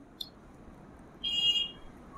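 A short, high-pitched tone lasting about half a second, a little over a second in, with a faint click just before it.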